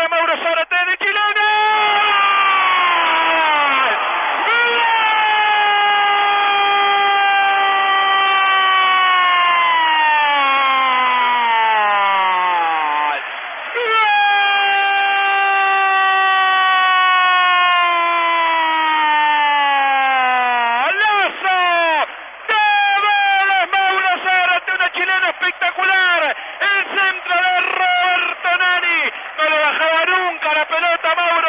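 Radio football commentator's long drawn-out goal cry: a single held shout of about eleven seconds sliding slowly down in pitch, a breath, then a second held shout of about seven seconds, followed by fast, excited shouting.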